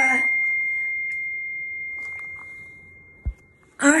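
A single high ding: one pure tone that rings out and slowly fades over almost four seconds. A brief low thump comes near the end.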